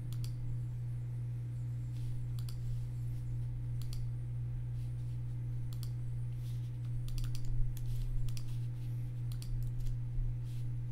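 Scattered computer keyboard keystrokes and mouse clicks, a few single clicks and then a quick run of typing from about seven seconds in, over a steady low electrical hum.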